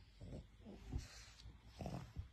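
A pug breathing noisily through its flat snout: a few faint low grunts and a short snuffling rush of air about a second in.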